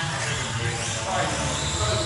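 Indistinct background voices in a large hall over a steady low hum, quieter than the commentary around it.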